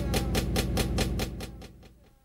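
Closing bars of a boom bap hip hop instrumental: a rapid, evenly repeated stuttering sample with short falling tones, fading out to silence as the track ends.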